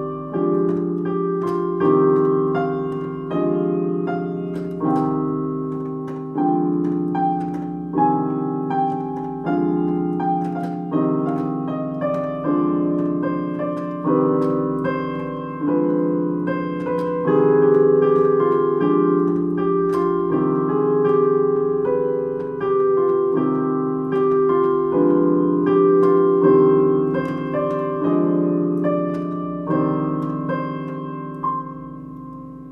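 Piano playing a slow two-chord vamp, C minor and D diminished, with a simple improvised melody on top drawn from the C harmonic minor scale. The chords are re-struck about every second and a half and die away between strikes.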